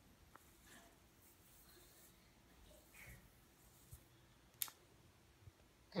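Near silence: room tone with a few faint, sharp clicks, the clearest about two-thirds of the way through.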